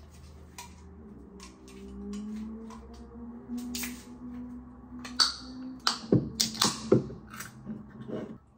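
Drink containers being handled on a kitchen counter: light clicks, a short pour about four seconds in, then a run of sharper knocks and clinks in the last three seconds as the can and plastic tumbler are handled and set down, over faint background music.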